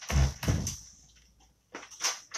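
Two short knocks with a scrape, about half a second apart: handling noise of tools and the board on the work table. It falls away quickly after the first second.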